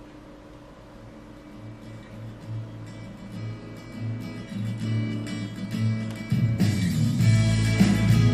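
Music played from a phone through a Logitech Z213 2.1 speaker system, two small satellites and a mini subwoofer. It starts faint with the volume knob at its lowest and grows louder as the volume is turned up. The bass fills in from about six seconds in.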